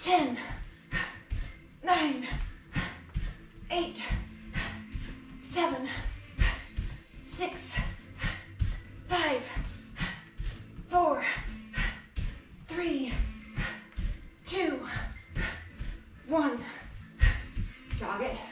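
A woman's voice calling out short counts about every two seconds, keeping time with kick-and-backfist reps, over background music. Bare feet thud on an exercise mat between the calls.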